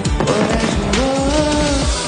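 Pop song with an electronic backing track and a steady bass beat, under a young man's sung melody that rises to a held note about a second in.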